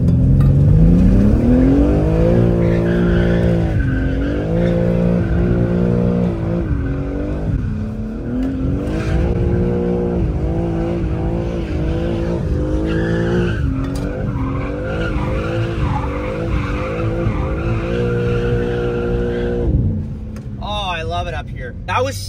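BMW G80 M3 Competition's twin-turbo inline-six, heard from inside the cabin, pulling hard and revving up and down through a run of bends, its pitch climbing and dropping with throttle and gear changes. The engine note falls away near the end.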